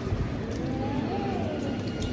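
Indistinct murmur of visitors' voices in a large stone church interior, over a steady low rumble.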